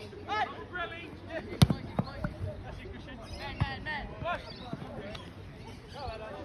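A soccer ball kicked a few times, the loudest kick about a second and a half in, with shouted calls from players on the pitch.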